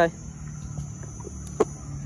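Insects chirring steadily at a high pitch, with a single sharp click about one and a half seconds in.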